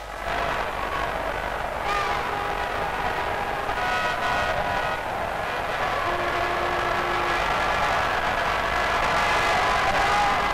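Crowd noise: a steady roar of many people, with faint voices and whistle-like tones coming through it.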